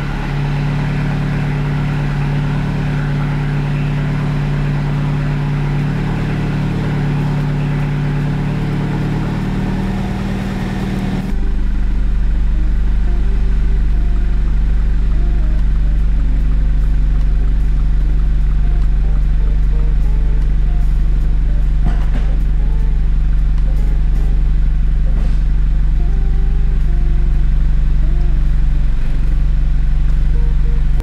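Turbocharged four-cylinder engine of a 2016 MINI John Cooper Works, fitted with a REMUS exhaust, idling steadily. About eleven seconds in the sound turns deeper and a little louder, and stays that way.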